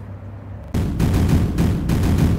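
Explosion sound effect for a channel intro: a sudden loud blast about three-quarters of a second in, followed by a run of deep booms.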